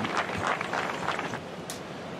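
Steady outdoor background noise of wind and a hushed golf gallery, easing off slightly toward the end, with a few faint clicks and no cheering yet.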